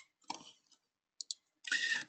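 Computer mouse clicking: a single click, a short rustle, then a quick double click a little after a second in, with a short hiss near the end.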